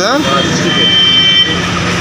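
A brief spoken word, then steady background noise with a faint high whine running under it.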